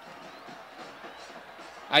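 Faint steady background noise in a pause between a man's sentences; his voice comes back right at the end.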